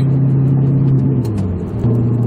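Audi R8 V8 engine heard from inside the cabin, droning steadily at cruise with its Armytrix exhaust valves closed. About a second and a quarter in, the drone drops in pitch and level for about half a second, then picks back up sharply near the end.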